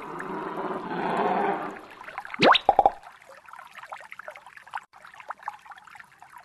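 Cartoon sound effects: a dense rushing sound for about the first two seconds, then a quick rising whistle about two and a half seconds in, followed by faint water trickling and lapping.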